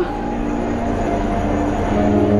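High-school marching band coming in on a long held chord, faint at first and swelling louder, over the steady noise of a stadium crowd.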